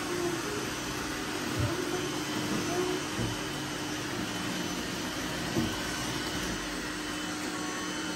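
Seven robot vacuums running together on a mattress: a steady whirring drone of their motors and brushes with a constant low hum, broken by a few brief knocks.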